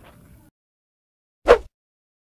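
Dead silence, broken once about a second and a half in by a single brief, sharp sound.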